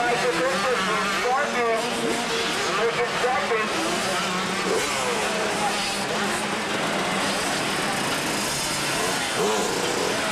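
Motocross bike engines revving up and down in pitch as riders take a jump on a dirt track, over a steady low drone.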